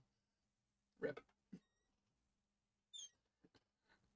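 Near silence, broken by one short spoken word about a second in and a brief, faint high-pitched chirp about three seconds in.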